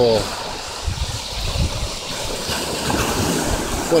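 Ocean surf washing onto the beach in a steady wash, with wind rumbling on the microphone.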